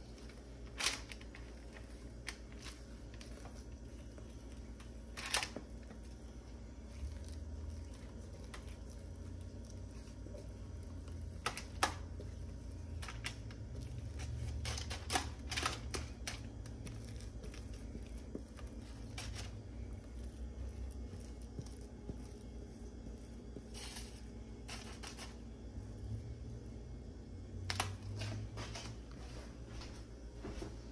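Spatula scraping and tapping against a stainless steel mixing bowl as thick cake batter is scraped out into a parchment-lined pan: scattered sharp knocks and soft scrapes over a low steady hum.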